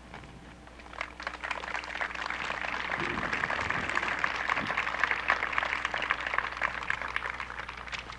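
Audience applauding: dense, irregular clapping that swells about a second in and fades away near the end.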